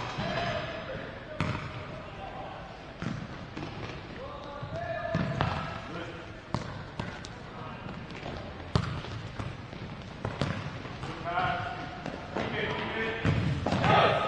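A futsal ball being kicked and bouncing on a hard indoor court, heard as many sharp, irregularly spaced knocks, with players' shouts and calls in an echoing hall.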